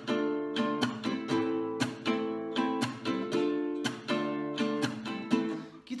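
Nylon-string classical guitar strummed in a steady rhythm of several strokes a second, moving between D minor and A minor chords.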